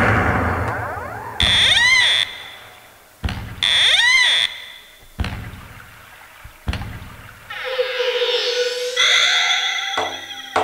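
Electronic stage sound effects: two short wavering alarm-like tones about a second and a half and three and a half seconds in, sharp bangs that die away with an echo about three, five and six and a half seconds in, then a rising electronic swoop near the end.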